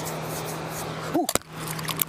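Steady rushing of river water flowing close around the camera, with a low steady hum under it.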